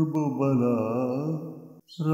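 Male voice reciting an Urdu manqabat (devotional poem), holding a long wordless note that wavers in pitch, then fades and breaks off briefly just before the next line.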